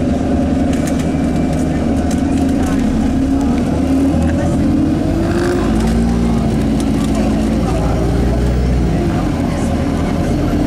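A bus engine running as the bus pulls away and drives on, its note rising about three seconds in and dropping again near the end, with light clicks and rattles over a steady low rumble.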